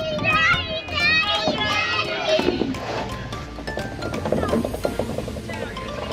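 Children's high voices calling and shrieking at play, busiest in the first half.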